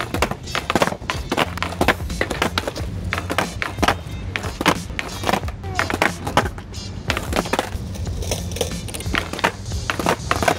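Skateboard clacking on the paved skatepark floor as a beginner practises ollies: the tail snapping down and the wheels landing in repeated sharp clacks. Background music plays under it.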